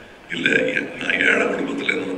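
A man speaking into a lectern microphone, starting again about a third of a second in after a short pause.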